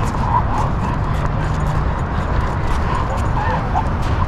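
A dog on a leash giving short whines and yips, over a steady low rumble with faint clicks.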